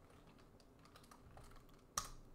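Faint typing on a computer keyboard, a few soft keystrokes, with one sharper click near the end.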